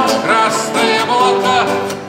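Male voice singing a chorus line to a strummed nylon-string classical guitar.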